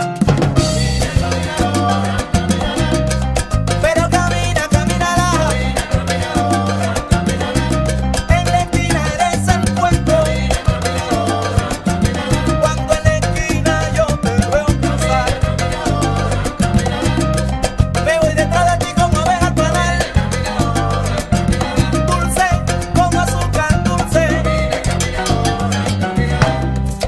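Instrumental passage of a salsa band recording: a stepping bass line and dense, continuous Latin percussion drive under a melodic lead line.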